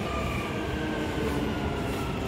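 Dubai Metro train pulling in and slowing at the platform: a steady running hum with several faint tones that slowly fall in pitch as it comes to a stop, heard through the glass platform screen doors.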